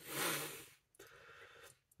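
A man's short breathy exhale, half a laugh, then faint handling sounds with a small click about a second in as a plastic-capped glass fragrance bottle is turned in his hand.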